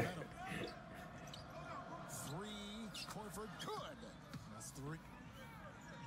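NBA game broadcast audio playing at low level: a commentator's voice over the bouncing of the basketball on the court.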